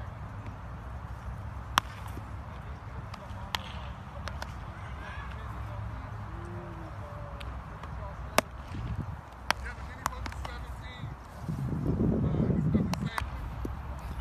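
Baseballs popping into leather gloves during a game of catch: sharp single pops at irregular intervals, several seconds apart. A louder low rumble lasts a second or two near the end.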